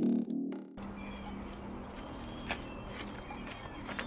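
Music cuts off within the first second, leaving faint outdoor ambience: a low steady hum with a few faint ticks and short faint chirps.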